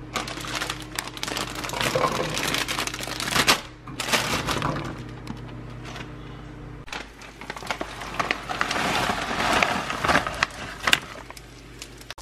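Plastic bag of sugar snap peas crinkling as the pods are tipped into a heated nonstick skillet, with crackly rustling and small clicks of pods landing and shifting in the pan, in several bursts.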